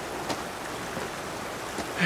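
Mountain river rushing over rocks: a steady wash of water noise, with a few faint clicks.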